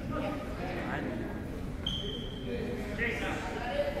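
Indistinct voices of players and spectators echoing in a school gymnasium. About two seconds in there is one brief, thin, high-pitched tone.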